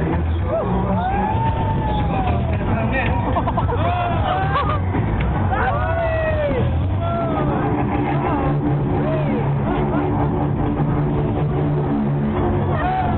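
Riders' voices shouting on a spinning fairground Octopus ride, many short calls rising and falling in pitch, over loud fairground music with a heavy steady bass. From about the middle on, held musical notes come through more clearly.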